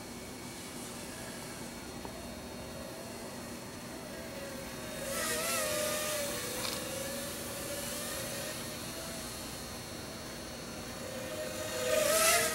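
Cheerson CX-30 quadcopter's motors and propellers whining in flight, the pitch wavering with throttle changes. The whine grows louder about five seconds in, eases off, and swells again near the end.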